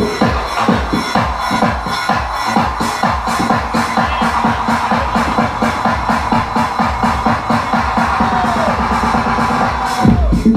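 Electronic techno playing loud over a club sound system in a live DJ set, with a fast, even beat. The deep bass kick thins out through the stretch, then comes back in full right at the end, as a breakdown drops back into the main groove.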